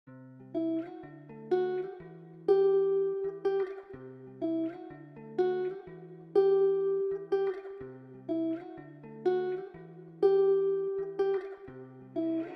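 Instrumental music: a plucked guitar melody loop, picked notes that ring over a held low line, with the phrase repeating about every four seconds and no drums.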